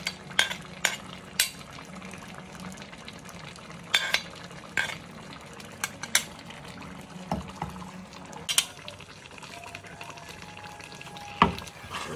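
A spoon scraping and tapping chopped leaves off a plastic plate into a pot of thick egusi soup, then a wooden spatula stirring it, with scattered sharp clicks and knocks against the pot. Under it a steady low sizzle from the pot on the stove.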